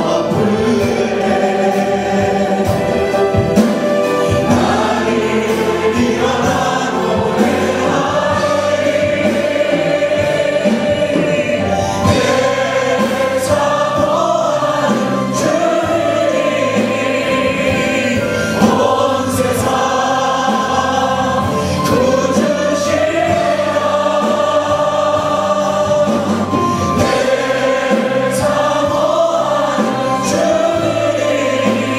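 Korean worship team of men and women singing a praise song together into microphones over instrumental accompaniment, steady and full throughout.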